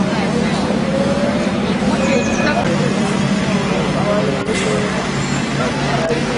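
Busy street ambience: people's voices over a steady rumble of traffic, with one sharp click about four and a half seconds in.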